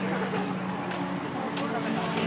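People talking over a steady engine hum.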